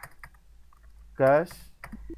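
Computer keyboard keys clicking in a few scattered keystrokes as an accounting entry is typed. A short spoken syllable comes a little past the middle.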